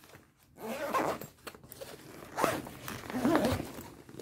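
Metal zipper on a fabric diaper-bag backpack being pulled shut, rasping in several short pulls about a second apart.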